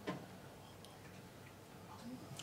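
Quiet room tone, with one sharp click right at the start and a couple of faint ticks later.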